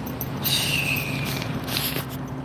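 Steady low hum of idling vehicle engines. About half a second in, a high squealing whistle starts with a hiss and slides slowly down in pitch, fading out after about a second.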